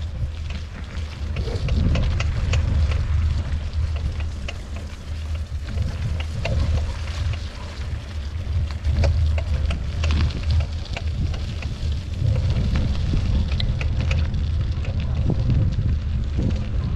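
Bicycle tyres rolling over a wet, muddy dirt road, with a steady low rumble of wind on the microphone and many small crackles and clicks from under the wheels.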